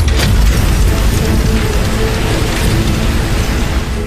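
Animated-soundtrack effect of metal chains rattling and clicking over a deep, steady rumble, with background music.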